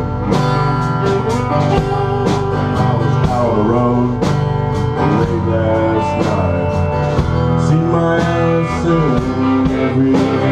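Full band playing country rock: strummed acoustic guitar, electric guitar, bass and a drum kit keeping a steady beat, with a melody line bending in pitch over the top.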